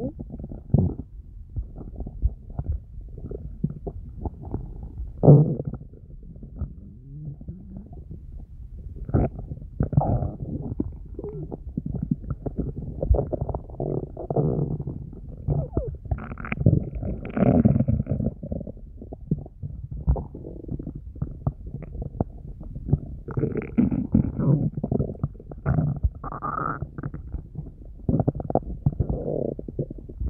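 An empty, hungry stomach growling and gurgling on and off, in low irregular rumbles. It rises into higher, squeakier gurgles about halfway through and again near the end.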